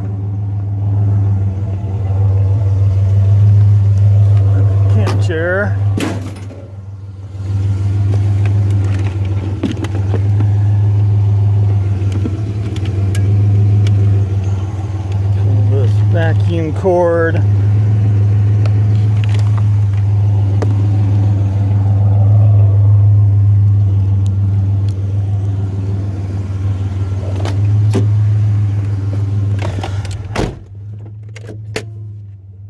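Vehicle engine running with a steady low drone, briefly dropping about six seconds in. Short wavering higher-pitched sounds come in about five seconds in and again around sixteen seconds in.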